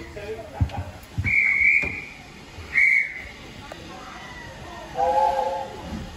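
Shrill platform whistle blown twice, a longer blast then a shorter one, typical of a guard's whistle giving a heritage steam train the signal to depart. About five seconds in, a lower whistle of several tones sounds for about a second, the steam locomotive's whistle answering; a couple of thumps come in the first second.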